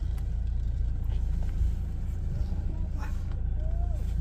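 Steady low rumble of a Toyota Fortuner heard from inside its cabin as it creeps forward in slow, jammed traffic, with faint voices from outside.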